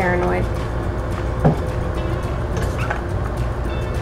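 A steady low hum throughout. A woman's voice trails off at the start, and there is a single sharp click about a second and a half in.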